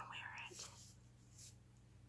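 Near silence: room tone with a low steady hum, and a faint breathy voice sound, like a whisper or exhale, in the first half-second.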